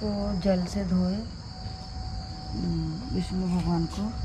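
Crickets chirping steadily in the background, while a woman's voice murmurs in two short runs of unclear speech.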